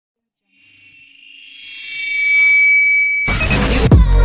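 Intro music: a sustained synth swell fades in from silence and rises, then a heavy bass-laden hit lands about three seconds in, followed by a falling bass drop near the end.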